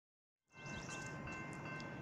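Railroad grade-crossing warning bell ringing steadily and faintly, starting about half a second in.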